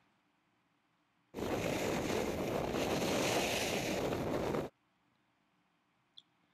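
Steady rushing noise of wind on a ski camera's microphone and skis sliding on hard groomed snow. It lasts about three seconds and cuts in and out abruptly.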